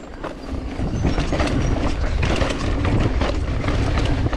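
Mountain bike riding fast down a dirt trail: the tyres rumble over the dirt and the bike rattles and clatters over bumps. The noise gets louder about a second in and then holds steady.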